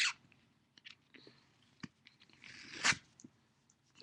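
Crinkling and rustling of a duct tape sheet being handled, with a few small clicks, and a louder crinkle that swells and stops about three seconds in.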